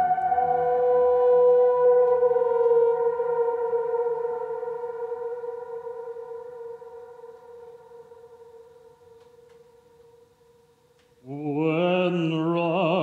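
Electronic synthesizer drone of held, steady notes that slowly fades away over several seconds. About a second before the end, a man's operatic singing voice comes in with vibrato.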